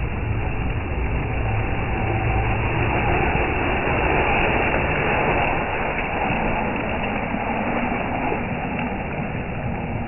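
Radio-controlled Traxxas TRX-4 truck driving through a muddy puddle, its motor running and its tyres churning and splashing through mud and water, loudest in the middle few seconds.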